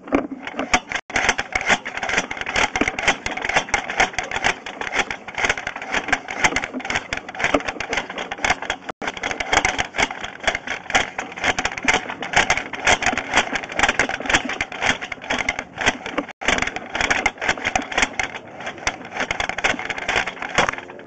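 Sewer inspection camera being pushed along a drain pipe on its push cable: a loud, dense, continuous rattling and scraping that starts abruptly.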